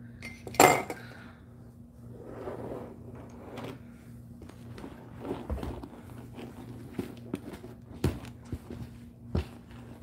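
Objects being handled on a table: a sharp clatter about half a second in as a bundle of plastic markers is set down, then rustling and scattered light clicks and knocks as a handbag is pulled over and handled. A steady low hum runs underneath.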